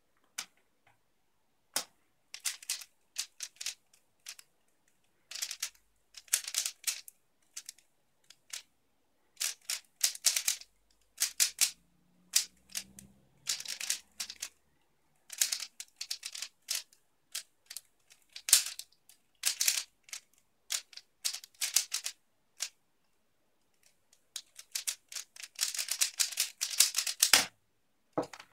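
A 3x3 speedcube turned fast through a timed solve: rapid clicking layer turns in bursts separated by short pauses, starting about two seconds in, with a dense run near the end. It ends in a thump.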